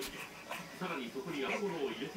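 A baby making soft straining grunts and whimpers with breathy panting as she struggles to roll over.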